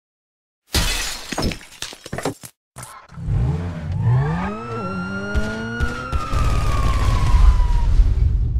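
Edited intro sound effects: a burst of crackling noise and clicks, then a pitched whine that rises, levels off and slowly falls over a low rumble.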